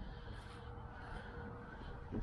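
Faint background noise: a low rumble with a thin, faint steady hum, and no distinct event.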